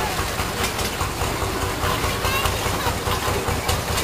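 A vehicle engine running with a steady low, fast-pulsing rumble, with people talking in the background.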